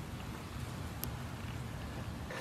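Low, steady outdoor background noise with one faint click about a second in.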